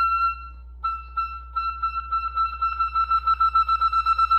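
Solo clarinet holding a high note that breaks off briefly just under a second in. The same note then comes back and is repeated in quick tongued pulses, about five a second.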